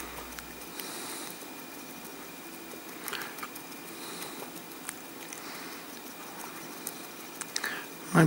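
Quiet room tone with faint scattered ticks and soft rustles from a small paintbrush stippling paint onto a miniature's textured base.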